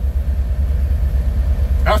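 A 1966 Mercury Park Lane's V8 engine idling, a steady low rumble with a quick even pulse, heard from inside the cabin. A man's voice starts again at the very end.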